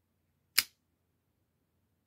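Stiletto pocket knife's blade snapping open and locking: one sharp metallic click about half a second in.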